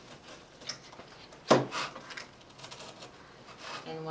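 Sheer wired ribbon rustling and crinkling as it is folded into a loop by hand, with small scattered clicks and one sharp knock about a second and a half in.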